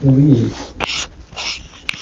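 An elderly man's voice into a handheld microphone: one drawn-out syllable of about half a second, then a few short hissing breaths and a click near the end.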